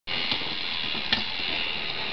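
Small battery motor and plastic gearbox of a motorized Zoids toy running with a steady high whir, with two clicks, the second just over a second in.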